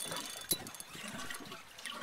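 Water sloshing against the side of a boat, with a single sharp click about half a second in.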